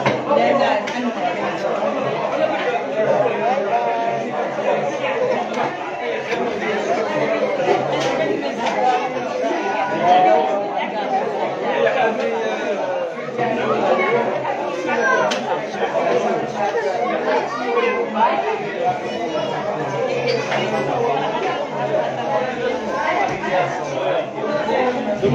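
A steady babble of many people talking at once in a large room, with no single voice standing out.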